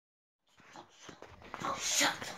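Small children play-fighting: starting about half a second in, a few light knocks and breathy, excited vocal noises that grow louder toward the end.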